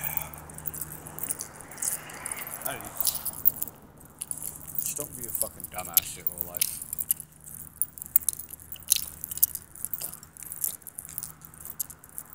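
Irregular light clicks and rattles right at the phone's microphone as it is handled and moved, over a low steady hum. A short stretch of muffled voice comes about five to seven seconds in.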